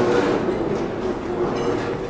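A large crowd getting to its feet: many chairs scraping and people shuffling, a continuous clattering noise that is a little louder at the start.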